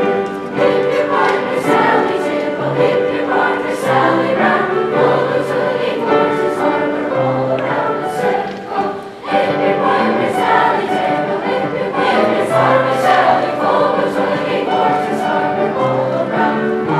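Seventh-grade children's choir singing in parts with grand piano accompaniment, with a short dip in level about nine seconds in.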